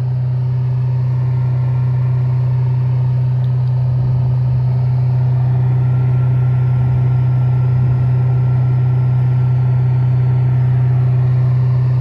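Trailer-mounted wood chipper's engine running steadily at constant speed, a loud deep drone that holds one pitch throughout.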